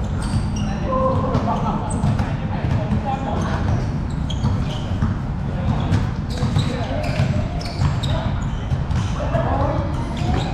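A basketball bouncing repeatedly on a hard court during a pickup game, mixed with players' voices calling out.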